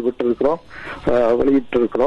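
Speech only: a person talking continuously, with short pauses between phrases.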